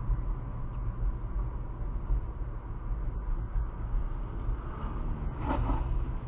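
Steady low rumble of a car driving, engine and road noise heard from inside the cabin. A brief pitched sound begins near the end.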